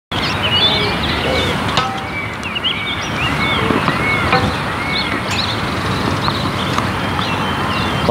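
Birds calling in repeated short chirps over a steady outdoor background hiss, with two sharp knocks about two and four seconds in.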